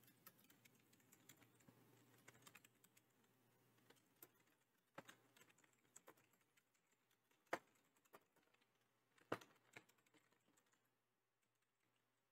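Faint, scattered keystrokes of a computer keyboard being typed on, with a couple of louder key presses around the middle and about three-quarters of the way through.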